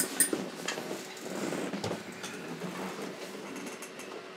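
A few soft clicks and knocks of a record being handled on a turntable, over quiet room noise; no music is playing yet.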